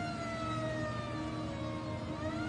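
Fire engine siren wailing, its pitch falling slowly.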